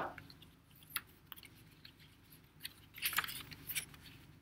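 Construction paper rustling and crackling as a folded, cut-out sheet is unfolded and handled: faint, sparse crinkles, busiest in the last second and a half.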